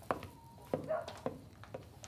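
A handful of sharp, short knocks or taps, about five across two seconds and unevenly spaced, over a faint background.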